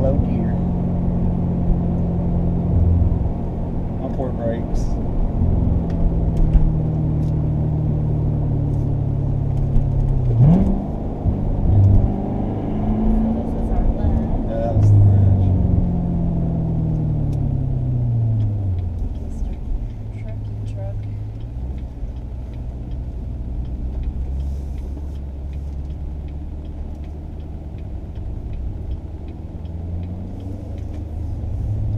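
In-cabin sound of a C7 Corvette Stingray's 6.2-litre LT1 V8 running on a steep downhill drive. About ten seconds in, the revs rise sharply as it is shifted down a gear, then fall away over a few seconds under engine braking. A lower, steadier engine sound follows through the second half.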